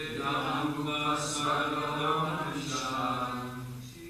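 Sanskrit chanting in a male-range voice, with long notes held at a steady pitch and two brief hissing consonants.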